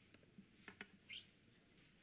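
Near silence: faint room tone with a few soft clicks a little over half a second in and a brief high squeak about a second in.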